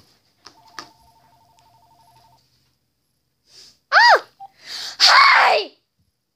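A phone ringing with a rapid two-tone trill for about two seconds, starting about half a second in. Then two loud, short, high-pitched vocal squeals that rise and fall in pitch, near the end.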